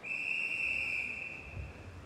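Swimming referee's whistle: one long, steady blast that fades out about a second and a half in. It is the start signal calling the swimmers to take their starting positions in the water.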